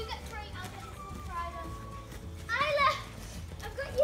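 Young children's voices at play, with a high-pitched call about two and a half seconds in.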